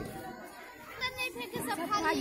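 Children's voices: faint background chatter, with a child talking from about a second in.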